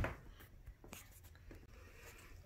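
A low thump right at the start, then a quiet pause with faint rustling and a few light clicks in a small room.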